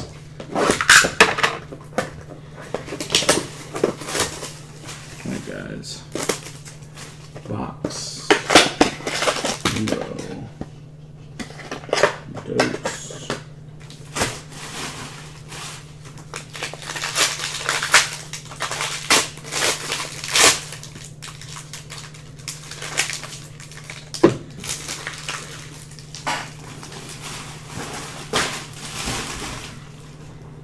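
Hands handling a cardboard trading-card box and tearing open a silver foil card pack: irregular crinkling, scraping and tapping as the wrapper is opened and the stack of cards is set down on the table. A steady low hum runs underneath.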